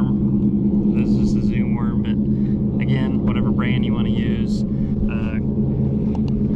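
A steady low motor hum with two fixed pitched tones, unchanging throughout, and a man's voice talking over it in short phrases.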